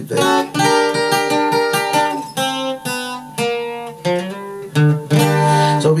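Acoustic guitar being strummed through a short run of chords, changing chord several times as the player works out a transposed chord sequence.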